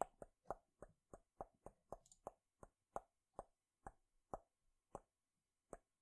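Soft clicking at a computer: a run of about sixteen short, sharp clicks, coming about four a second at first and slowing to about one a second near the end.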